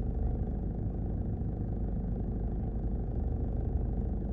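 Car idling, a steady low rumble heard from inside the cabin.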